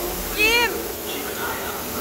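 A single short, high-pitched cry that rises and falls in pitch, about half a second in, over the murmur of riders' voices.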